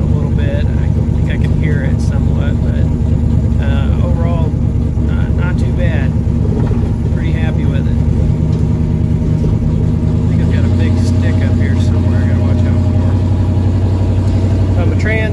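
Interior sound of a 1995 Mustang's turbocharged 351 Windsor V8 on the move, a steady engine drone with road noise. About ten seconds in, the engine note steps down in pitch and gets a little louder.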